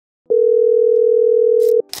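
Telephone calling tone used as a call sound effect: one steady beep of about a second and a half, with a click as it starts and stops, then a short noise just before the call is answered.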